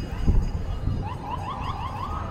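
Electronic alarm siren sounding a run of rapid rising chirps, about five a second, in the second half. Under it is a low rumble, with a thump about a quarter second in.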